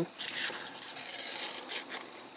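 Protective paper film being peeled off a clear acrylic case panel: a dry, high-pitched tearing hiss that starts just after the beginning and stops shortly before the end.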